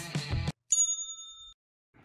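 Background music cuts off abruptly; then a single bright, bell-like ding sound effect rings and fades for under a second before stopping suddenly.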